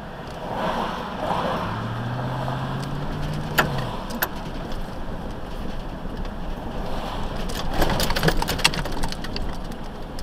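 A vehicle driving in city traffic, heard from inside the cab: steady road and engine noise, with a low engine hum that rises slightly in the first few seconds, and scattered clicks and rattles, mostly later on.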